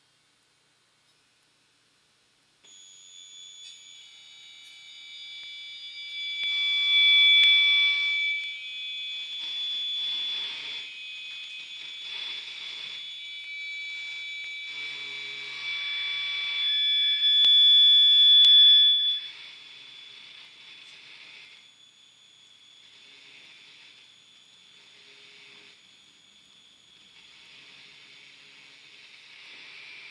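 Live electronic piece for piezo transducers: several shrill, steady electronic tones sound at once, starting a few seconds in, with swells of hiss that pulse about every two seconds. The loudest swells come about a quarter of the way in and just past the middle.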